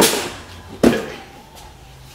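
Two thumps as cardboard boxes of firework cakes are set down into a wire shopping cart, one at the start and one a little under a second later.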